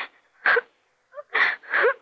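A person's short, breathy whispered sounds, coming in pairs of hissing bursts with silence between them.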